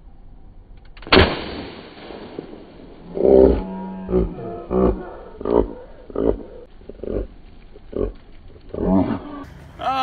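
A confetti cannon rigged in a car's boot fires with one sharp bang about a second in. A string of shorter bursts follows, a little under a second apart.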